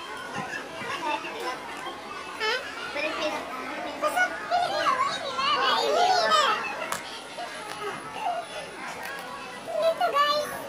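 Children's voices calling out at play, high-pitched, loudest about halfway through.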